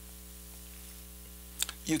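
Steady low electrical mains hum in a pause between speech, with a couple of faint clicks near the end just before a man starts to speak.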